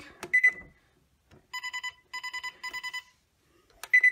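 Gold's Gym treadmill control console beeping as its buttons are pressed. A button click and a single short beep come shortly after the start. Then three quick bursts of rapid electronic beeps follow, and another click and beep come near the end.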